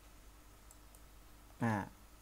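Two faint computer mouse clicks a quarter of a second apart, advancing a slide, then a short spoken syllable from a man near the end.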